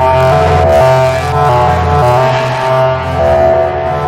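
Live electronic music: dense, droning synthesizer chords over a deep bass drone, the chords shifting in steps every second or so.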